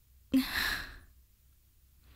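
A woman's sigh: one breathy exhale starting with a short catch of voice about a third of a second in and fading out within about a second.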